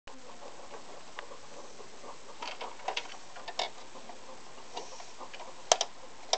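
Small plastic toy cars and figures being handled against a plastic toy parking garage: scattered light clicks and taps, with a sharp double click near the end, over a steady hiss.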